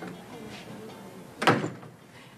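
The tail of a music cue fading out, then a single loud, sharp thump about one and a half seconds in that rings briefly.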